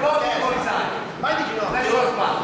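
Several men shouting long, drawn-out calls of encouragement from cageside, their voices overlapping, with the noise of a crowd in a hall behind.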